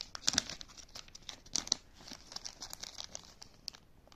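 Small plastic packaging bags crinkling as they are handled, in a run of irregular sharp crackles that are loudest near the start and again about a second and a half in.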